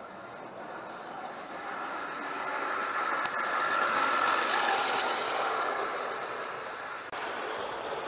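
OO gauge model GWR pannier tank locomotive hauling goods wagons past along the track: electric motor whirring and wheels running on the rails, growing louder to its loudest about four seconds in as it passes, then fading away. One sharp click a little after three seconds in.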